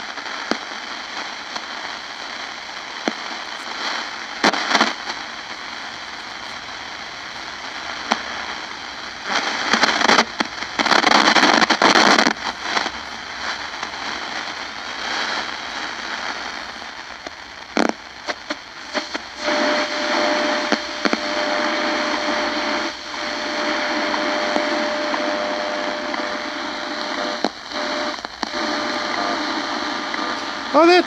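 Shortwave static from the loudspeaker of a GE P925 transistor radio as its dial is tuned by hand: steady hiss and crackle, louder for a few seconds about a third of the way in, with a steady whistle tone from a carrier setting in past the middle.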